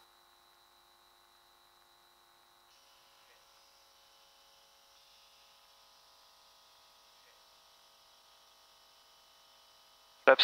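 Near silence: a faint, steady hum.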